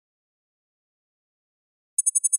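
Near silence, broken right at the end by the first of a fast run of short, high-pitched beeps from a text-typing sound effect.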